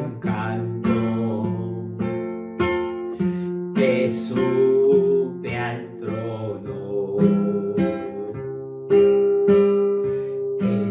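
A man singing a Spanish Pentecostal chorus to his own strummed acoustic guitar, the chords struck in a regular rhythm under the melody.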